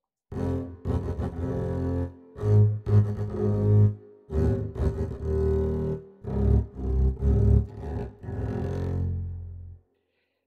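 Double bass detuned down a fourth, bowed in octaves so that two strings an octave apart sound together. It plays a series of about five low notes, each a second or two long with brief gaps between them.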